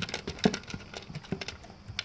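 Golden retriever eating dry kibble from a plastic slow-feeder bowl: irregular crunching and clicking, several times a second.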